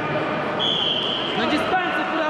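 Several voices calling out at once in a large sports hall, with a steady high tone lasting under a second about halfway through.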